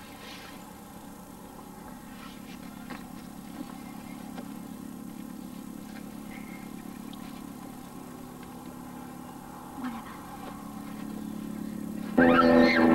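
A steady low engine hum that slowly grows louder, with a few faint knocks and rustles over it.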